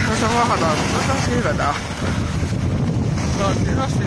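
Steady wind buffeting the microphone of a skier moving downhill.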